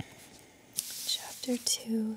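A woman takes an audible breath about a second in, then starts speaking in a soft, hushed voice.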